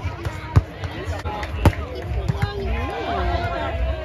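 Volleyball being struck by players' hands and arms during a rally: sharp slaps, the two loudest about a second apart, over spectators chatting.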